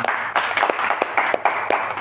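Audience applauding: many hands clapping in quick, irregular claps.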